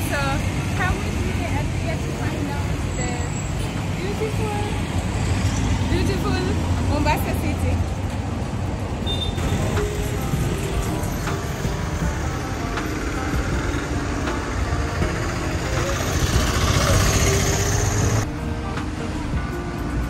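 Busy street traffic with vehicles running and people's voices in the background. Near the end, music with steady held notes comes in.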